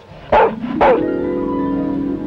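A dog barks twice, short and loud. About a second in, a held musical chord comes in and sustains.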